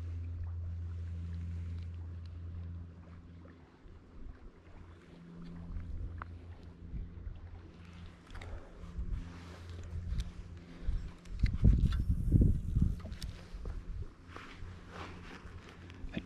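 Bass Pro Shops Micro Lite Elite spinning reel cranked to retrieve a lure, a steady low whirr. In the second half, louder irregular low rumbles of wind buffet the microphone.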